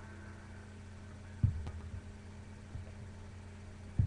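A low steady hum with faint hiss, broken by a few soft low thumps, the loudest about a second and a half in and another at the very end.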